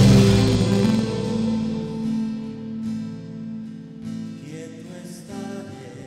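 Live worship band music: the full band with drums drops away about a second in, leaving quiet sustained guitar chords.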